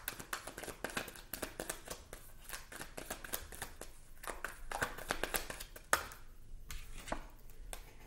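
A tarot deck being shuffled by hand: a run of quick papery card flicks and taps, with a sharper tap about six seconds in.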